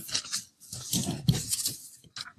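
Sheets of paper rustling and crinkling close to a lectern microphone, in irregular bursts with a short break about half a second in.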